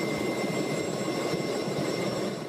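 Helicopter engine and rotor noise heard from on board, a steady rush with thin, high, unchanging whining tones above it.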